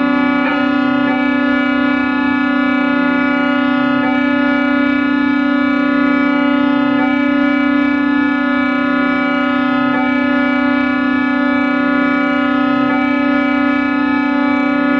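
Sustained electronic drone: one steady pitched tone, rich in overtones, holding at a constant level, with a faint low pulse repeating about every second and a half beneath it.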